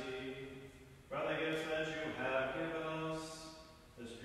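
A priest chanting a liturgical text in a male voice on long, mostly level held notes. One phrase dies away in the first second, and a new one begins about a second in and fades out near the end.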